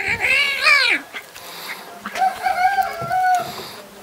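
Kitten crying out while a puppy play-fights with it: a high squeal that rises then falls in the first second, then a lower, steadier cry a little after two seconds in.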